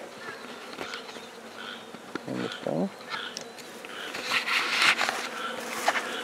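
Honey bees buzzing as a steady hum around an open hive, with a short burst of rustling about four seconds in.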